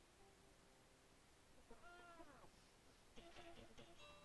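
A faint single meow, rising and then falling in pitch, about two seconds in, followed by a short, noisier sound a little after three seconds.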